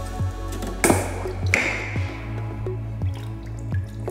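Graco Mark V airless plaster sprayer's prime valve being opened to relieve pressure: a short rush and hiss of pressure and material escaping about a second in, fading out within a second or so, as the pump pressure bleeds down. Background music with a steady beat plays throughout.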